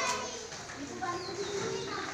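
Background voices of people talking in the gateway and street, lower than the nearby speech either side.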